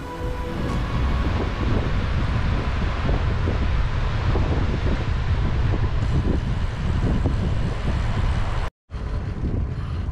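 Wind buffeting the camera's microphone on a moving bicycle, a dense rumble that holds steady. It cuts out for a moment near the end.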